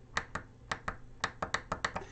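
A DFRobot push-button module's tactile switch clicking under a finger, pressed and released several times in quick succession. Each press steps the Arduino's counter up by one.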